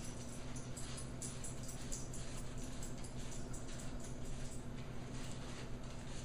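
Paper towel dabbed and rubbed on a snake egg, faint papery rustles over a steady low hum.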